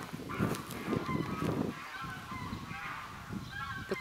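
Domestic fowl calling repeatedly with short, pitched calls, with some rougher low sound in the first two seconds.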